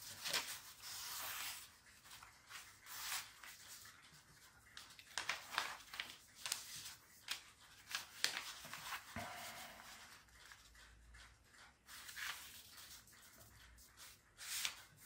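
A sheet of paper being folded and creased by hand: a series of short rustles and rubs as the sheet is turned and fingers press and slide along the folds.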